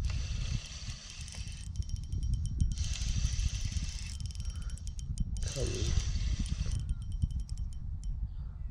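Shimano Stradic 2500 spinning reel cranked in three bursts, each a fast, high whirring clicking, as line is wound in with the rod bent under a fish. A steady low wind rumble on the microphone runs beneath it.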